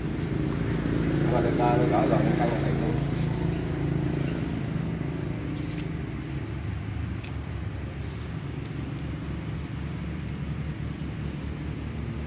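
Steady low drone of an engine running in the background, with faint voices in the first few seconds and a few light clicks around the middle.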